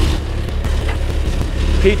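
Kubota RTV-X1100C's three-cylinder diesel idling steadily, with a couple of faint clicks about halfway through as the snowblower's mounting pins are locked.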